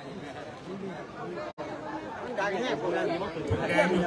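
Background chatter: several people talking at once, off-mic, growing louder in the second half.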